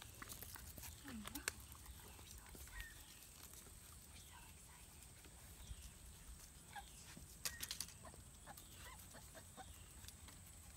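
Near silence outdoors: scattered light clicks and scuffs, with a short soft pitched whine about a second in and a faint chirp repeating about once a second.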